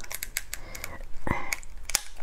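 Small sharp clicks and crackles of a cooked crab's hard shell being handled and picked at by fingers, with one brief louder sound just past the middle.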